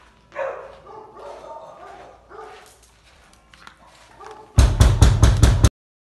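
Raised voices, then about four and a half seconds in a dog barks very loudly and rapidly, some six barks in about a second, cut off abruptly.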